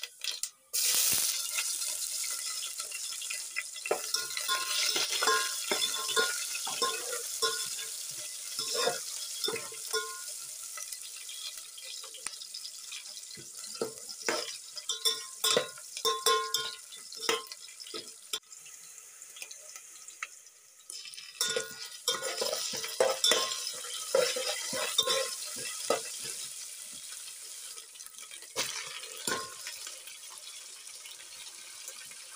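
Food frying in hot oil in a steel pot, the sizzle starting suddenly about a second in, with many sharp clanks of a utensil against the pot as the vegetables are stirred.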